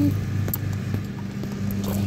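A steady low mechanical hum, with a faint click about half a second in.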